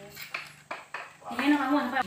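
A few quick, light metallic clinks in the first second, of a small round metal lid being handled.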